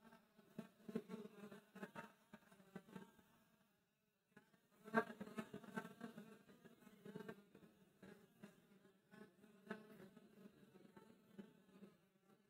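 Near silence, with a man's voice faintly muttering in short, buzzy stretches, strongest about halfway through.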